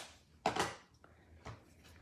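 Craft supplies being handled and set down on a desk work mat: a sharp knock about half a second in and a lighter tap about a second later.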